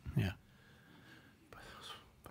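Speech only: a man says a short 'yeah', then a quiet pause with faint room tone and a soft, breath-like sound near the end.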